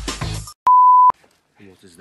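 Film-score music with heavy percussive beats breaks off about a quarter of the way in. A loud, steady bleep tone at one pitch follows, lasting about half a second and cut off sharply. A man starts speaking near the end.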